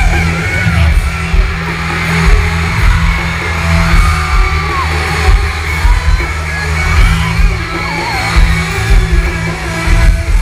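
Live pop-rock band playing loud through a concert sound system, with a steady drum beat and guitars, heard from the crowd. Singing and fans' screams and whoops ride over the music.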